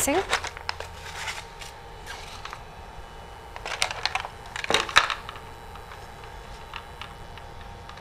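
Rigid clear plastic packaging tray crinkling and clicking as a plastic disposable with tubing is handled and lifted out of it, in a few short bursts around the middle, with a couple of faint clicks later.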